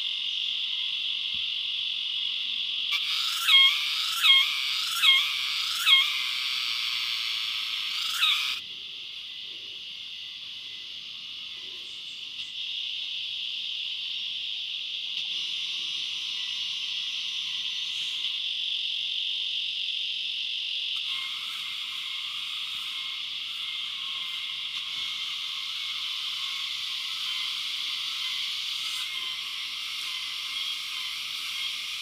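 Steady, high-pitched forest insect chorus. A few seconds in, four loud calls about a second apart, with one more shortly after, which sound like a frog croaking.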